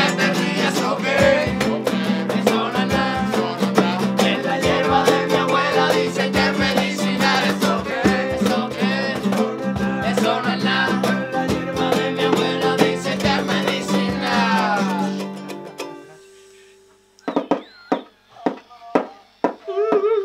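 Small acoustic band: nylon-string guitar strummed with a ukulele and hand drums under group singing, fading out about fifteen seconds in. After that, a few short voice sounds that swoop up and down in pitch.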